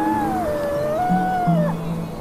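A wolf howl, one long call that rises, wavers and falls away, over slow instrumental music with low held notes.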